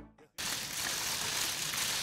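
The last of a music sting fades out, then a brief silence, then a steady, even hiss of room noise begins about a third of a second in.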